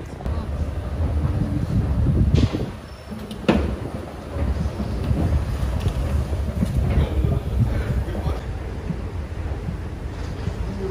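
Rail transit ambience: a low, steady rumble with the voices of people around, first by the red heritage tram, then in a metro station. A sharp knock cuts through about three and a half seconds in.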